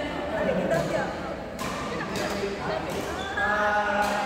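Voices talking and calling out in an echoing sports hall, with two sharp knocks about a second and a half and two seconds in, typical of racket hits or foot slaps on a badminton court.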